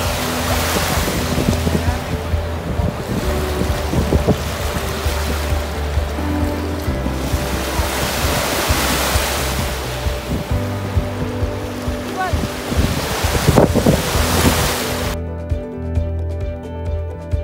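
Wind-driven lake waves washing on a pebbly shore, the surge rising and easing every few seconds, with wind buffeting the microphone. Background music plays underneath and carries on alone after the surf cuts off suddenly about a second before the end.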